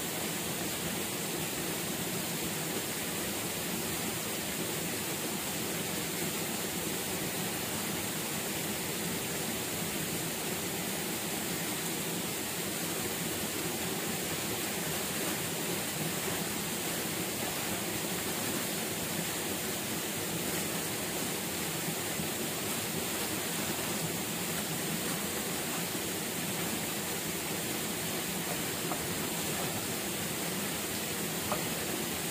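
Steady, even rushing of running water.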